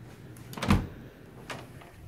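A closet door being opened: one dull thump about two-thirds of a second in, then a lighter click near the end.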